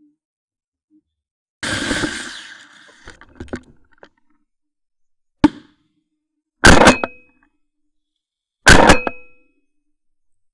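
Shotgun shots during a partridge shoot: a softer report about a second and a half in, a sharp crack a little past halfway, then two loud shots about two seconds apart near the end.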